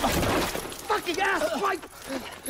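A sudden crashing, scuffling burst, then a run of short, strained vocal cries.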